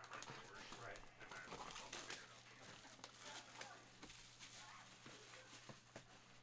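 Clear plastic shrink wrap being torn and peeled off a cardboard box, faint crinkling and crackling.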